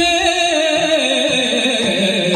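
Yakshagana-style devotional singing: one voice holds a long, wavering note that slides slowly downward over a steady drone.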